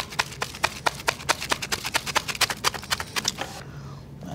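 Plastic rice roll shaker (sushi roll shaker) shaken rapidly by hand with rice, fillings and nori inside, knocking in a fast, even rhythm of several clicks a second. The knocking stops near the end.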